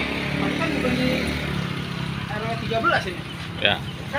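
A motor vehicle's engine running, a steady hum that fades away after about two to three seconds, with people talking over it.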